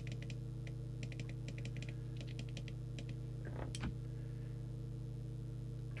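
Runs of quick, small clicks from the CB radio's channel up/down button being pressed repeatedly to step through the channels. There are three bursts in the first three seconds, over a steady low electrical hum.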